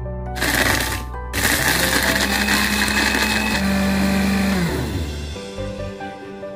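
Small electric blender grinding Oreo cookies into crumbs: a short burst, a brief stop, then a longer run of about three and a half seconds. The motor's hum drops in pitch as it spins down near the end.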